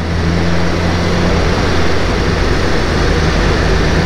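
BMW S1000RR's inline-four engine running steadily at a low cruising speed, under a constant rush of wind and road noise.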